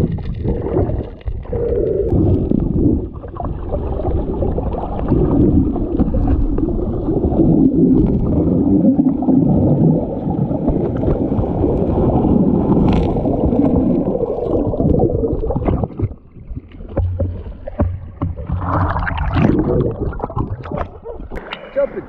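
Strong creek current heard underwater: a loud, muffled, low rushing of water over the submerged camera. It eases about sixteen seconds in, followed by splashing near the end as the camera comes up out of the water.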